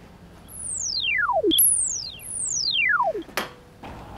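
Electronic sound effect: three pure tones, each sliding quickly down from very high to low pitch, the second one shorter and overlapping the others. Sharp clicks come after the first and third slides.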